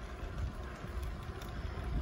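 Steady low rumble of wind buffeting the microphone as it moves along at speed, with a light haze of noise above it.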